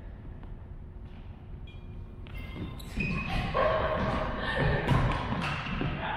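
A badminton doubles rally: sharp racket hits on the shuttlecock and short squeaks of court shoes on a wooden gym floor, busier and louder in the second half.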